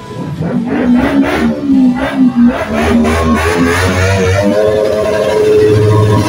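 Motorcycle engine revving: short rev blips at first, then held at higher revs, its pitch climbing and wavering.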